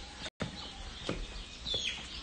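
A bird chirping briefly near the end, over faint outdoor background noise; the sound drops out completely for a split second about a third of a second in.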